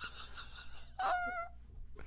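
A man laughing hard, faint at first, then a brief high-pitched, wavering wheezing squeal about a second in.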